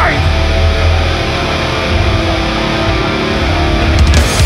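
Distorted electric guitar and bass letting chords ring out with the drums and vocals dropped out, a held break in a live punk song. The full band crashes back in at the very end.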